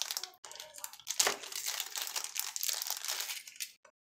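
Small plastic Ziploc bag crinkling and crackling irregularly as it is handled and opened by hand.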